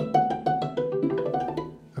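Master Works DulciForte hammered dulcimer struck with hammers: a short run of separate notes stepping between pitches, dying away smoothly near the end as its dampers are engaged.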